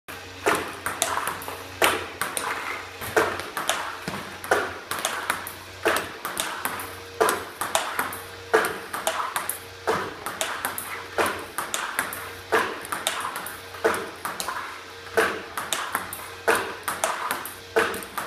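Table-tennis ball fed by a ball machine and hit with repeated forehand strokes. A sharp click of ball on bat comes about every 1.3 seconds, with lighter clicks of the ball bouncing on the table between. A steady low hum runs underneath.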